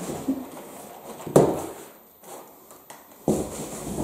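Cardboard shipping box being handled while boxed sets are lifted out of it: rustling and scraping of cardboard, with one sharp knock about a third of the way in and louder rustling again near the end.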